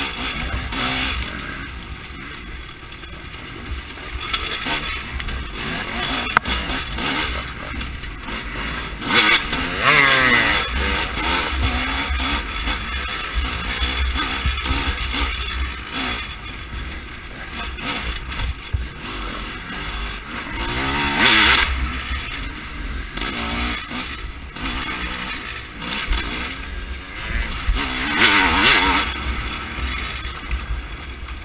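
Dirt bike engine revving up and down through the gears under racing load, with three louder bursts of throttle: about a third of the way in, about two-thirds in, and near the end. A steady low rumble of wind on the helmet microphone runs underneath.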